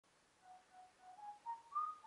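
Whistled melody opening a pop song: three short notes on one pitch, then three notes stepping upward, the last the highest and longest with a slight upward slide, growing louder through the phrase.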